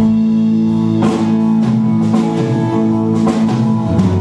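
Live band playing an instrumental passage: an acoustic guitar played over held chords, with light drums.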